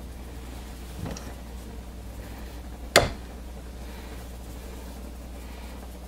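A wooden wire soap cutter slicing a bar from a soap loaf, with a faint sound about a second in and one sharp click about three seconds in as the cut finishes.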